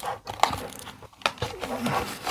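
Hands opening a small cardboard model box: the end flap and its clear plastic seal rustle and scrape, with a couple of sharp ticks.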